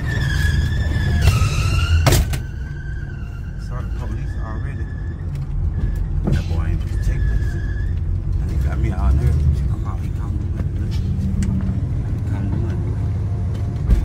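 Car engine and road noise rumbling inside the cabin while driving, with a high wavering squeal coming and going over the first eight seconds and a sharp knock about two seconds in.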